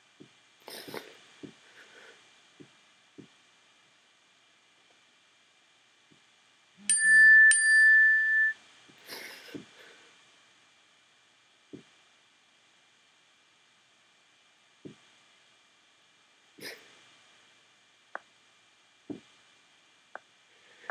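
A single steady high tone, like a chime or beep, sounds about seven seconds in and lasts about a second and a half. Otherwise only a few faint scattered clicks over low hiss.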